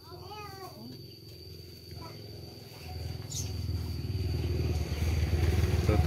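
A motorcycle engine running and growing steadily louder over the second half, as if drawing near. A brief voice-like call with a bending pitch comes at the very start.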